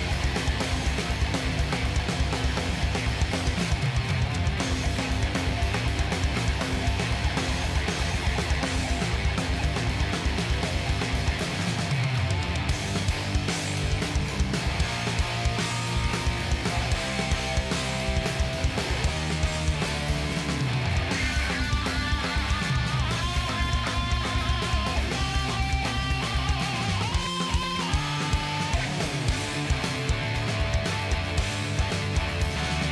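Live stoner-rock trio playing: distorted electric guitar, electric bass and a drum kit in a steady heavy groove. A high melodic line comes in over it about twenty seconds in.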